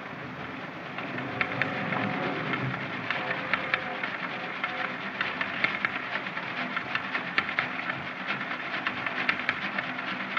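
Railroad freight car rolling along, a steady rumble with an irregular run of sharp clicks and knocks from the wheels and car body.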